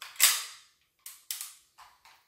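Handling of metal replica air pistols: one loud sharp clack about a quarter second in, followed by three or four lighter clicks and knocks.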